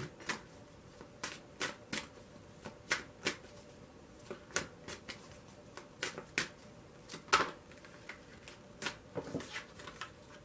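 A tarot deck being shuffled by hand, the cards giving irregular sharp clicks and snaps, one or two a second, with the loudest snap about seven seconds in.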